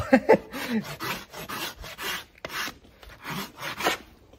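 Farrier's flat hoof rasp filing the hoof wall of a large Shire cross hoof in repeated back-and-forth strokes, about two a second, rounding and shaping the foot.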